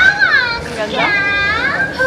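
High-pitched wordless vocal cries with swooping pitch, like children squealing.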